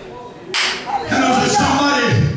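A sudden sharp burst about half a second in, then a man's raised voice through a microphone and PA in a reverberant hall.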